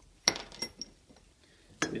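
Metal tool clinking: one sharp clink about a quarter second in, then a few lighter ones, as a 24 mm socket on its extensions is handled against the steel fork tube.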